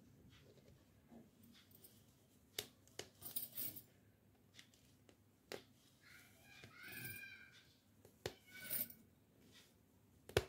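Faint scattered clicks and short scratchy rustles of an aari hook needle piercing fabric taut on an embroidery frame and drawing metallic thread through, with a faint wavering tone about seven seconds in.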